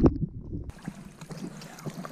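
Pool water splashing and sloshing around a swimming dog. For the first half-second or so it is heard from underwater, a loud, muffled low rumble; then the splashing comes through clearly, with a few small knocks.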